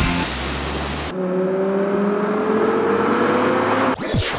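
A music track cuts off about a second in, giving way to a car engine accelerating, its note rising steadily for about three seconds.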